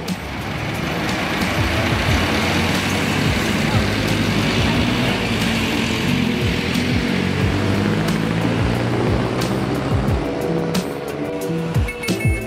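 Road traffic: vehicle engines and tyre noise swelling over the first couple of seconds as traffic passes close, then easing near the end, over background music.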